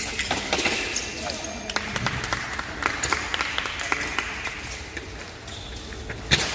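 Foil blades clicking and knocking together, with fencing shoes stamping on the strip, in quick irregular strikes during a bout. Voices carry in the background.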